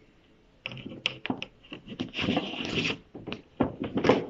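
A picture card being pulled out through the slot of a wooden kamishibai theatre frame. A few knocks, then card scraping and rubbing against the wood, loudest for about a second in the middle.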